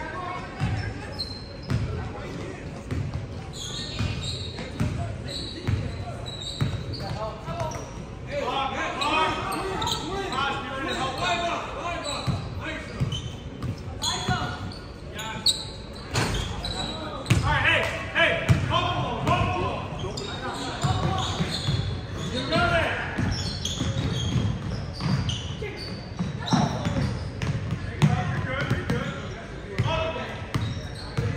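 A basketball game in a gym: the ball bouncing on the hardwood court while players and spectators call out, the sounds echoing in the large hall. The loudest calling comes about halfway through, just after a shot goes up.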